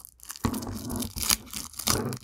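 Packaging rustling and crinkling as it is rummaged through by hand, starting about half a second in, with two sharper crackles in the second half.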